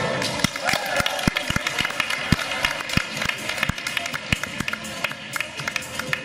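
Irregular dull thumps of a gymnast's hands and feet landing on a padded balance beam during a routine, about a dozen over the stretch, over a murmur of voices and faint music.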